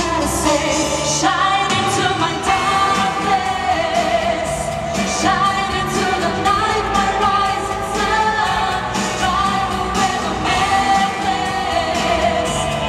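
Two young women singing a pop ballad into handheld microphones over a full backing track, amplified through the PA of a large hall.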